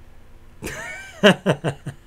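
A man laughing: a drawn-out breathy start about half a second in, then four or five quick bursts of laughter.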